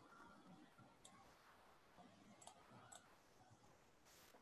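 Near silence with three faint computer mouse clicks: one about a second in, then two about half a second apart a little later.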